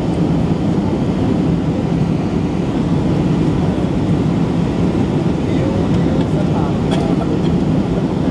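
Steady cabin noise of a jet airliner in its climb after takeoff: an even, low rumble of engines and airflow heard from inside the passenger cabin.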